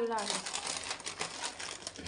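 Plastic and foil food packets crinkling and rustling as a hand shuffles through a pile of them on a stone countertop, with many small crackles.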